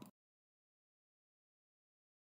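Near silence: the last trailing syllable of a spoken word cuts off right at the start, then dead silence.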